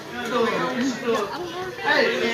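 Chatter of several people talking at once, with no music playing.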